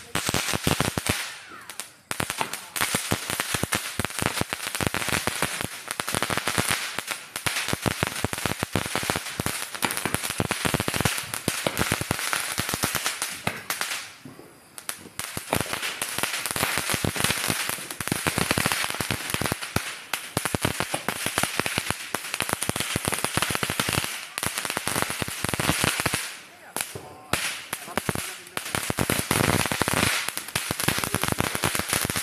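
Firework fountain spraying sparks with dense, rapid crackling and popping. It eases off briefly three times: just after the start, about halfway through and near the end.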